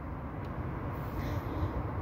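Steady low background noise with no distinct sound standing out.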